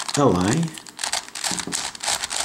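A Circle Crystal Pyraminx twisty puzzle being turned by hand, its plastic layers clicking and rattling in quick runs of small clicks as the moves of a solving algorithm are made. A spoken word near the start.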